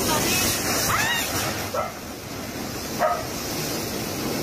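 Typhoon wind and driving rain, a dense rushing noise strongest in the first two seconds and easing after. A few short high-pitched calls cut through it, the loudest about three seconds in.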